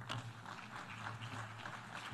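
Audience applause: a fairly faint, dense patter of many hands clapping over a steady low electrical hum.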